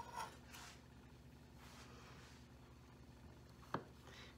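Near silence: room tone with a faint steady low hum, and a single short click near the end, as the knife comes down through the fudge to the wooden cutting board.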